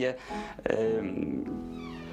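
A man's drawn-out hesitation sound, a held 'yyy' that starts about two-thirds of a second in, over soft background music.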